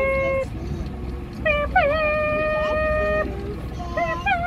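A high voice holding long wordless notes: one ends about half a second in, and a second, slightly higher one starts with a short dip in pitch about a second and a half in and is held for nearly two seconds. Underneath runs the steady low rumble of the boat's outboard motor and wind.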